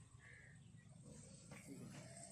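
Near silence: faint outdoor background with a low rumble.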